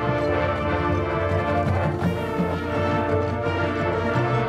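High school marching band playing: brass holding sustained chords over the percussion, the low notes shifting about two seconds in.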